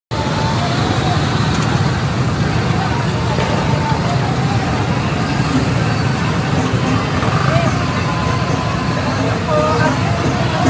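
Many motorbike and scooter engines running in a jammed street, a steady low rumble, with people's voices and calls over it.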